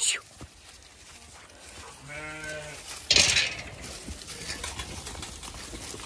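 A Zwartbles ewe bleats once, a quavering call of under a second about two seconds in, followed a moment later by a brief burst of hiss.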